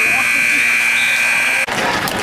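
Gym scoreboard horn sounding one long, steady buzz as the game clock runs out, cutting off suddenly near the end, over crowd voices in the gym.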